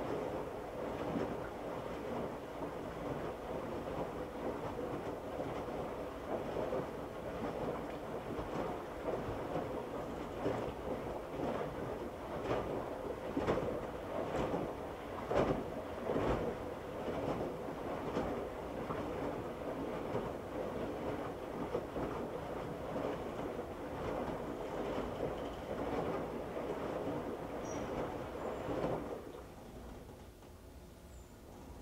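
Electrolux front-load washer drum turning and tumbling a wet moving blanket on the heavy duty cycle, with irregular knocks as the load falls. The tumble stops suddenly about a second before the end.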